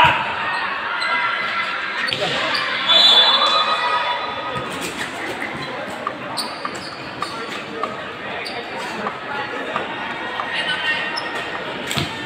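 Spectators' voices shouting and calling in a large reverberant sports hall during an indoor volleyball rally, loudest about three seconds in. Through the rest come sharp knocks of the volleyball being struck and hitting the court.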